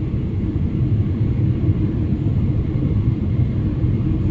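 Steady low rumble of an airliner cabin in flight: engine and airflow noise heard from inside the plane.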